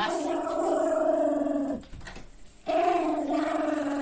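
Toy poodle growling: two long, rough growls with a short break of about a second in the middle, the angry growl of a dog guarding his prize.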